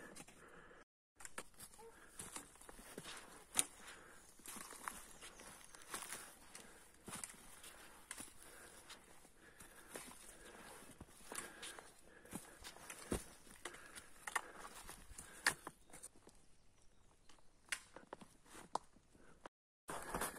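Faint footsteps of hikers walking with trekking poles over snow and a rocky, leaf-covered trail, with irregular crunching steps and light taps.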